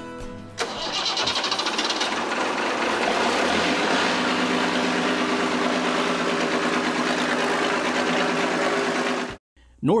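1966 Versatile D100's Ford six-cylinder industrial diesel engine being started: a rough, noisy catch about half a second in, settling within a few seconds into a steady idle. The sound cuts off abruptly near the end.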